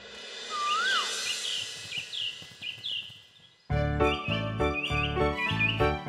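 Cartoon sound-effect birdsong: short repeated chirps and one rising-and-falling whistle over a soft outdoor ambience. About three and a half seconds in, bouncy children's-cartoon background music with a steady beat starts abruptly, and the chirps carry on over it.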